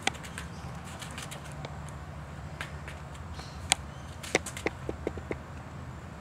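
A Dalmatian's claws clicking and tapping on a foam mat and patio floor as she moves and lies down with a toy: a few sharp clicks near the middle and a quick run of lighter taps about five seconds in, over a steady low hum.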